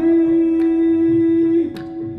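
A qawwali singer holds one long steady note over a sustained accompanying drone. About a second and a half in, the note slides down and fades.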